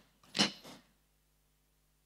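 Microphone handling noise: a short, sharp rustle about half a second in, followed by a fainter one.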